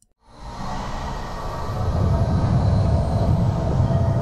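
Rumbling whoosh of a logo-intro sound effect, fading in and swelling over the first two seconds, then holding steady and heavy in the bass.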